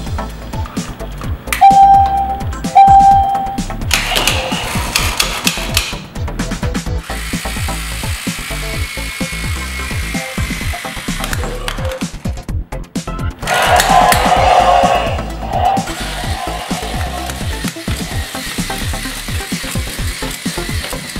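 Background music with a steady beat. Over it, a Teksta robotic T-Rex toy gives two short electronic beeps about two seconds in, then longer electronic sound effects around four seconds and again around fourteen seconds in as it takes the bone accessory.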